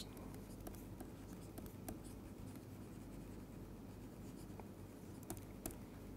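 Faint stylus writing on a tablet screen: small scattered taps and scratches of the pen tip, over a low steady hum.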